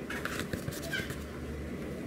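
Faint background noise with a low hum, and one brief, faint high-pitched call about a second in.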